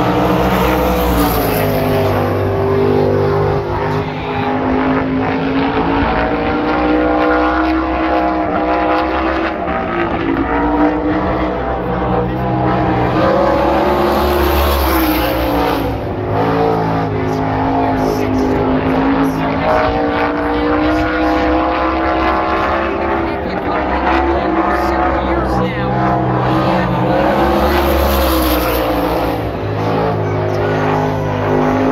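Winged sprint car's V8 engine running hard around the oval on a qualifying lap, its pitch rising and falling with the straights and turns. It swells louder and brighter about every 13 to 14 seconds, three times, as the car comes by.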